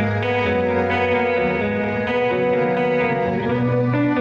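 Live instrumental band music: an electric guitar playing a lead line over acoustic guitar and bass guitar, with sustained notes and chords changing every half second or so.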